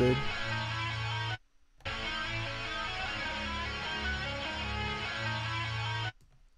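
Original melodic sample loop with guitar-like plucked notes, played alone at its original, unsped 150 BPM tempo without drums. It breaks off briefly about a second and a half in, then carries on.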